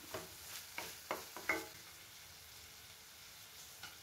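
Wooden spatula stirring and scraping chopped onion, tomato and green chilli around a nonstick frying pan, a few short scrapes in the first second and a half, over a faint sizzle of the vegetables frying in oil.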